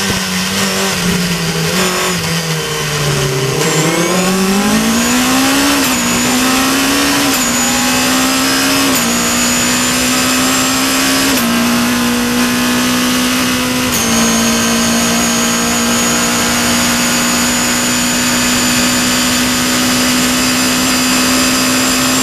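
Caterham's 2.3-litre Cosworth four-cylinder engine, heard from the cockpit, pulling hard out of a slow corner. The note sinks to its lowest about three and a half seconds in, then climbs through about five upshifts, each a short drop in pitch. For the last eight seconds it holds a steady high note in top gear at about 230 km/h.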